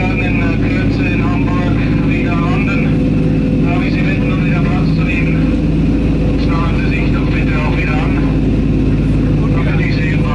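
Wright R-3350 radial piston engines and propellers of a Lockheed Super Constellation running with a steady drone on approach, heard from inside the aircraft. Indistinct voices run over the engine noise.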